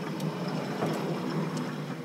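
Felt chalkboard eraser wiping a blackboard: a steady rubbing that eases off near the end.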